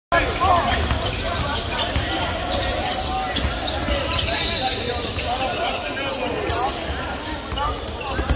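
Basketballs bouncing on a hardwood court, a run of sharp irregular thuds in a large reverberant arena, over indistinct chatter of players' voices.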